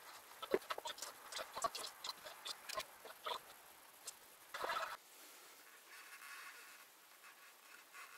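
Fine-line masking tape being laid by hand on a motorcycle helmet shell: scattered light clicks and taps of fingers and tape on the shell, with a short scratchy burst a little past halfway.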